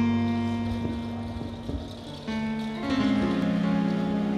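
Live band playing the slow instrumental opening of a romantic ballad: sustained chords that ring and fade, with a new chord struck about two seconds in and another about three seconds in.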